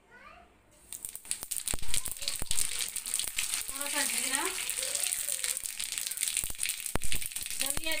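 Jakhiya and cumin seeds crackling and sizzling in hot mustard oil in an iron kadhai for a tadka, beginning about a second in, with a dense run of small pops and a few louder clicks.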